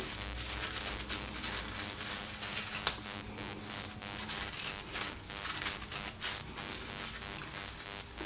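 Scissors snipping through folded tissue paper, with irregular cuts and paper rustling, one sharper snip about three seconds in.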